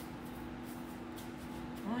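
Quiet rustling of breadcrumbs as a raw chicken strip is pressed into them by hand, over a steady low hum.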